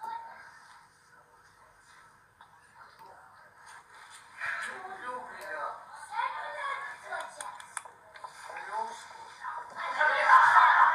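Speech only: a voice talking quietly, becoming louder and clearer about halfway through.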